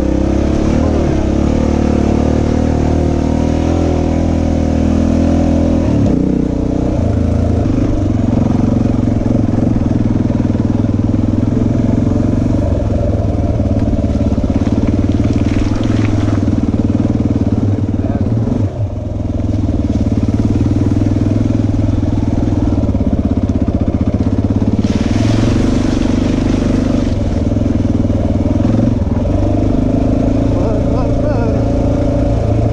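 Honda XR dirt bike's single-cylinder four-stroke engine running steadily under load while climbing a muddy trail, with the throttle briefly closing about two-thirds of the way through before it picks up again.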